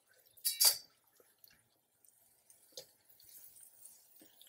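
A silicone spatula stirring a dry onion masala and stuffed eggplants in a metal kadai: one short scrape about half a second in and a faint knock near three seconds, with quiet between.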